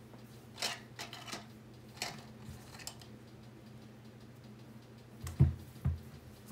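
Sneaker being handled on a desk: a few soft scrapes and rustles, then low thumps near the end as the shoe is picked up and turned. A faint steady hum runs underneath.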